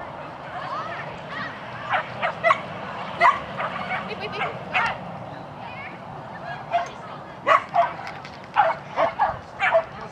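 A dog barking repeatedly in short barks, in two quick runs: one starting about two seconds in and another from about six and a half seconds to the end.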